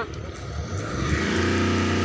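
A motor vehicle's engine on the road, getting louder about a second in and then running steadily.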